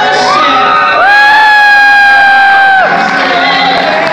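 A live singer's voice slides up into a loud, long held high note for about two seconds, then breaks off. Audience cheering rises under the note.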